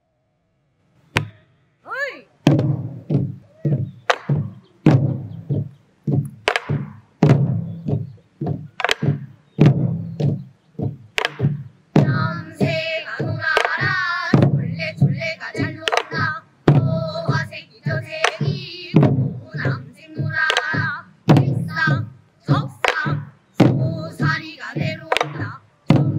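Korean buk barrel drums struck with sticks in a steady rhythm, each beat a sharp knock with a low thud under it, with a short sliding vocal call near the start. About twelve seconds in, a group of girls begins singing a Namdo folk song in unison over the drumming.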